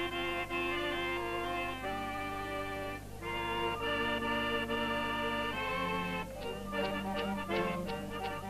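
Circassian folk ensemble playing a traditional tune: a reedy accordion melody in held notes over bowed shichepshin fiddles. About six seconds in, the notes turn short and clipped.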